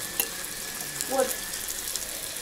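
Pirozhki frying in oil in a large stainless steel pan, a steady sizzle, with a brief click just after the start as they are turned with a fork and spatula.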